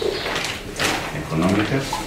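Low, indistinct talk in a small meeting room, with sheets of paper being handled and rustled.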